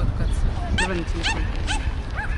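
A dog yipping: three short, high barks about half a second apart, starting a little under a second in, over a steady low rumble.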